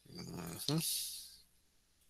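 A dog vocalizing once, a short call of about a second and a half that peaks sharply about halfway through.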